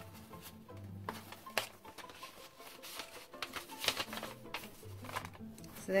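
Soft rustling and light clicks of paper and card being handled, with faint music underneath.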